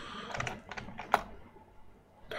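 Computer keyboard keys clicking in a short run of key presses, with one sharper click a little after a second in.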